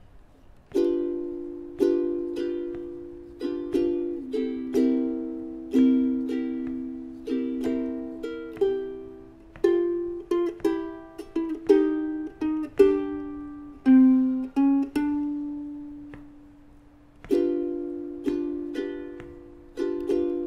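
Ukulele playing a slow blues turnaround: strummed D7 and C7 chords in an even down-up pattern, then a short single-note walking line. One note is left ringing and dying away for a few seconds, and strumming starts again near the end.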